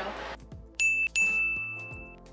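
A bell-like ding sound effect sounds twice: a short ding, then a longer held one that cuts off abruptly. It marks the start of a new round of the tool battle, in the manner of a boxing-ring bell.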